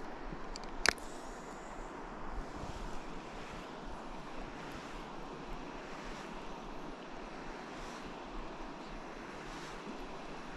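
Steady rushing outdoor noise of river water and wind on the microphone, with a single sharp click about a second in.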